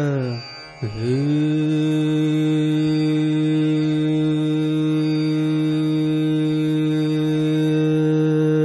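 Male Hindustani classical vocalist singing raga Bhimpalasi: a phrase falls in pitch and ends, and after a short breath, about a second in, he holds one long steady note over a tanpura drone.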